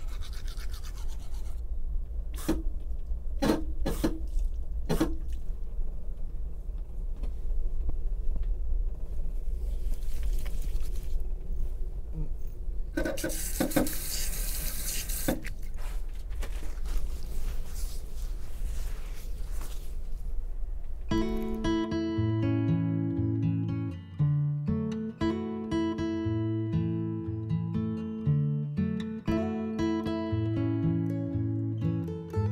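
Low, steady rumble of a moving train heard inside its small lavatory, with a toothbrush scrubbing, a few sharp knocks, and a burst of running water from the push-button sink tap about 13 seconds in. About 21 seconds in, plucked acoustic guitar music takes over.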